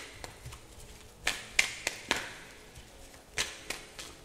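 A tarot deck being shuffled by hand: sharp snaps and flicks of the cards, four in quick succession a little over a second in, and two more at about three and a half seconds.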